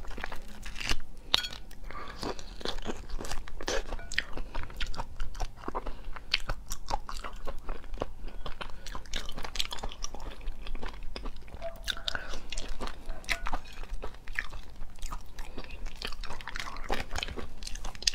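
Close-miked chewing, biting and wet mouth sounds of a person eating raw lobster meat, with many small irregular clicks and crunches and no break.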